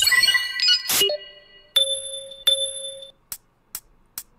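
Electronic intro jingle of chiming, ringing tones with sharp hits in the first three seconds, followed by a few short sharp clicks about half a second apart near the end.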